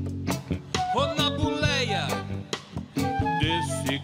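Live rock band playing a song: drums hitting in a steady beat under bass and electric guitar, with a male voice singing a line that slides up and then down in pitch in the middle.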